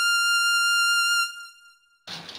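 A synthesized electronic note held on one steady pitch, bright and buzzy, fading out about a second and a half in: a title-card sound effect.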